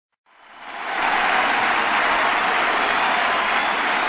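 Audience applause, fading in over about the first second and then holding steady.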